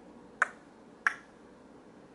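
Two short, sharp clicks, about two-thirds of a second apart, against a quiet room.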